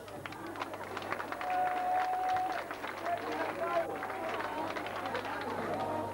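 Scattered audience applause in the open air, with crowd chatter, as the next contestant is announced.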